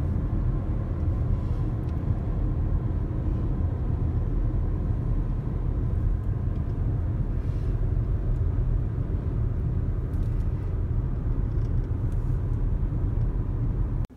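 Steady low road and engine rumble heard inside the cabin of a moving car, with a faint steady hum on top.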